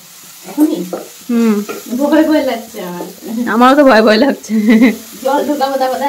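A woman talking in Bengali, speaking in short phrases with brief pauses.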